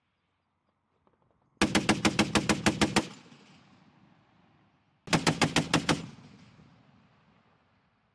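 M2 .50-caliber heavy machine gun firing two bursts of about eight rounds a second: a longer one of about a second and a half, then a shorter one of about a second a few seconds later. Each burst trails off in a rolling echo across the range.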